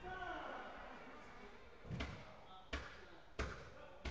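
A football thudding in an indoor hall: four sharp, echoing impacts about two-thirds of a second apart from about halfway in, as the ball is kicked or bounced. A shout with falling pitch comes at the start.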